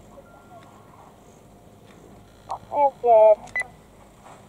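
A person shouting two short, loud calls about two and a half seconds in, followed by a brief high beep.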